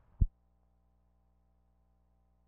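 A single loud, low thump about a quarter second in, typical of a splice passing on a film soundtrack, then only a faint, steady electrical hum with no program sound.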